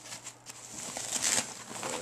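Rustling and crinkling of a protective packaging sheet as it is handled and pulled off a newly unboxed electronics unit. It is loudest just over a second in.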